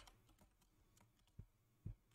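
Two faint computer keyboard keystrokes, about a second and a half in and again near the end, against near silence.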